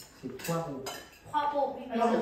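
Cutlery clinking against dinner plates during a meal, with a couple of sharp clinks about half a second and a second in, among table conversation.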